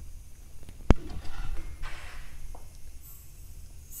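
A single sharp click about a second in, then light handling noises. Near the end a faint high hiss of gas begins as the test rig is opened to energize the regulator.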